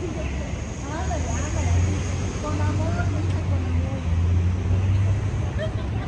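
City street ambience: a steady low rumble of traffic that swells through the middle, with people's voices talking in the background.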